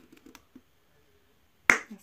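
A sharp plastic snap about one and a half seconds in: the flip-top cap of a Dove shower gel bottle being popped open. Before it, a few faint clicks of the bottle being handled.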